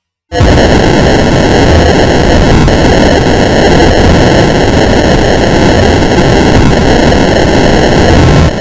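Loud, harsh, steady wall of distorted noise: a logo's soundtrack mangled by editing effects. It cuts in abruptly about a third of a second in.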